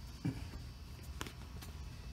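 A quiet pause with a low steady background hum. A brief vocal sound comes about a quarter second in, and a few faint clicks come past the middle.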